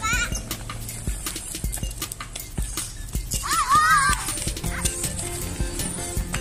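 Background music with frequent light clicks, and two short high warbling cries, one right at the start and a longer one about three and a half seconds in.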